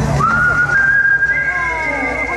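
A long, high whistled note that slides up at the start and then holds steady, joined about halfway through by a second, higher held note.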